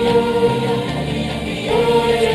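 Choir singing a school hymn in Indonesian: a long held note that fades about halfway through, then a new sung phrase beginning near the end.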